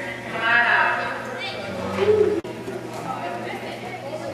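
Indistinct voices of people talking in a large, echoing indoor arena, with a momentary break in the sound about two and a half seconds in.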